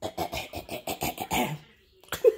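A woman's voice in a quick run of short, breathy bursts for about a second and a half, then it stops.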